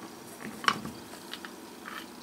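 Metal T-nut being slid by hand into the T-slot of a South Bend 9-inch lathe's compound rest: a few light metal clicks and scrapes, the sharpest about two-thirds of a second in. It goes in freely, a loose fit rather than a tight one.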